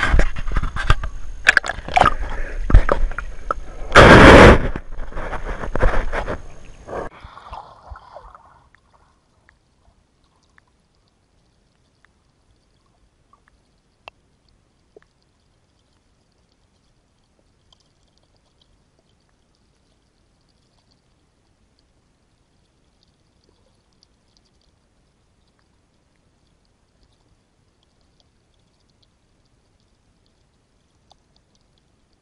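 Action camera in a waterproof housing being handled and pushed down into river water: knocks and splashing against the case for the first several seconds, loudest about four seconds in. After that, near silence from under the water, with a few faint ticks.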